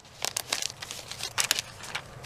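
Textured die-cut paper flowers rustling and crinkling as they are handled, a run of irregular small crackles.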